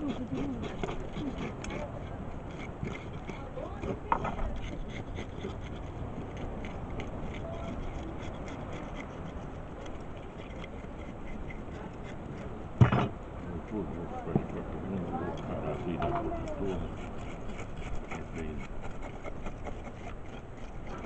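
Whole fish being scaled by hand with a scraper on a wooden table: a run of quick small scraping ticks, with one sharp knock about thirteen seconds in.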